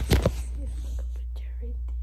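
Hand handling a phone right against its microphone: a quick run of loud scuffs and knocks at the start, then a few faint clicks over a steady low hum.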